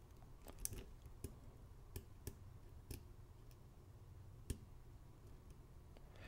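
Faint, scattered clicks of a steel hook pick working the pins inside a pin-tumbler lock cylinder under light tension, about ten light ticks with the sharpest about four and a half seconds in. The picker calls it "crunching going on in there".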